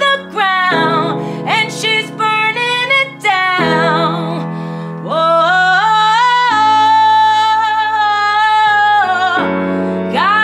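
A woman singing to her own piano accompaniment. The melody slides between notes, then holds one long high note from about five seconds in to nearly the end, over sustained chords that change every few seconds.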